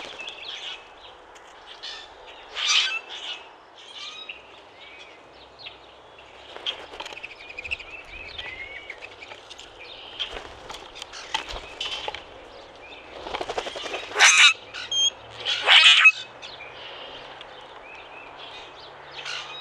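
Common grackles giving short, harsh, squeaky calls, three of them loud: one about three seconds in and two close together near the end. Fainter chirping and twittering from other birds runs underneath.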